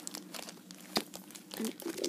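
Baseball cards in plastic sleeves and holders crinkling and clicking as they are handled and set down: a string of small, irregular crackles.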